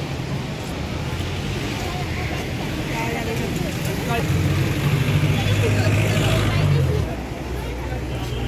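Street traffic with a vehicle engine rumbling low, louder from about four seconds in and dropping away suddenly near the seventh second, over a background of people talking.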